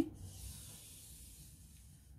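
Marker pen drawn along a wooden ruler across pattern paper: a soft hiss of the tip rubbing on the paper, fading out after about a second and a half.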